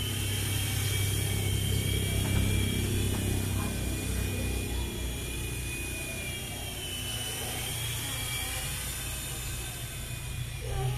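Small electric RC helicopter (Nine Eagles Bravo SX) whirring, its high motor whine wavering in pitch as the throttle changes, over a low steady rumble.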